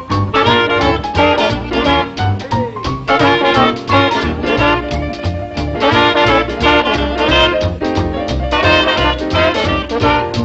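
Jazz band playing instrumental swing: brass horns over piano, bass and drums, with a steady beat.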